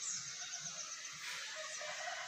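Outdoor ambience with a small bird's rapid, high chirping trill that fades out just after the start. A rooster starts a long crow near the end.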